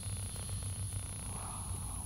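Quiet outdoor background: a steady low hum under a faint, constant high-pitched whine, with no distinct event.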